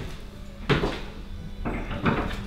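Two dull knocks about a second apart, the first about two-thirds of a second in, over a faint steady hum.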